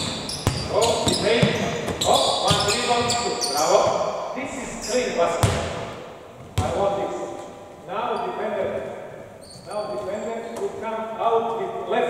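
A basketball bouncing on a hardwood gym floor, with repeated bounces through the first half and fewer after. Voices carry throughout, echoing in a large sports hall.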